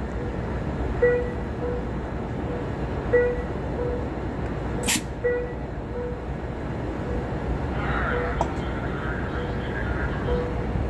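A passenger train's locomotive bell rings as the train starts to pull out, striking in pairs about every two seconds over the steady low rumble of the train. There is one sharp click about five seconds in.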